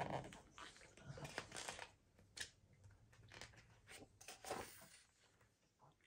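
Faint rustling and light clicks of a hardcover picture book's paper page being handled and turned by hand.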